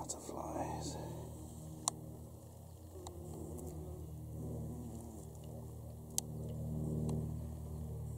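Faint, indistinct voices over a low steady hum, with two sharp clicks.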